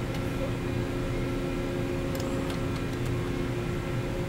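Steady machine hum with a low rumble and a few held tones, one of which drops out near the end, with a few faint clicks a little past two seconds in.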